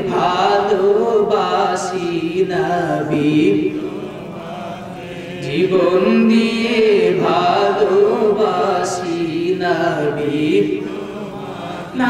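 A male preacher's voice through a microphone and PA, chanting in a drawn-out, melodic style with long held, wavering notes. The phrases come in two long runs, each ending in a quieter dip.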